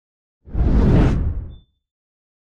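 Whoosh sound effect of a news-channel logo sting, with a deep low rumble under it. It swells in about half a second in, lasts about a second, and fades out, with a faint brief high tone at its tail.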